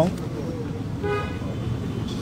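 A vehicle horn gives one short toot about a second in, over the steady rumble of street traffic.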